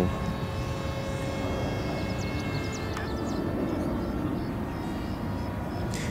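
Steady drone of a distant aircraft engine, holding several even tones, with a few faint short chirps about two to three seconds in.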